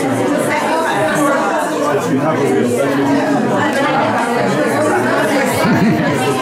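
Crowd chatter: many people talking at once in a room, their voices overlapping into a steady hubbub with no single voice standing out.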